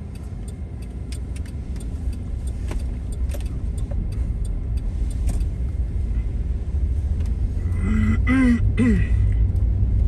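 Car-cabin road and engine rumble, growing louder as the car pulls away and gathers speed, with faint scattered ticks. A short voice-like sound comes in near the end.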